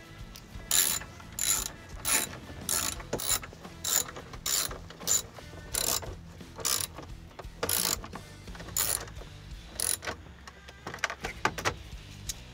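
Hand socket ratchet with a 7 mm socket clicking as it drives in the small bolts that hold a truck's instrument cluster. The clicks come in a quick, uneven series, about two a second, and trail off near the end.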